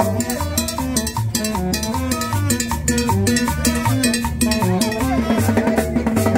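A live street band playing Latin dance music: upright bass and drum kit with cymbals keeping a steady, busy dance beat under a melody.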